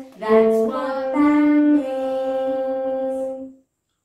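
A saxophone and voices performing the same melody in unison, a few sustained notes ending on a long held note that stops sharply near the end.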